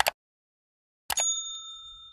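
Subscribe-button animation sound effect: a quick double click, then about a second later another click followed by a bright bell ding that rings out and fades.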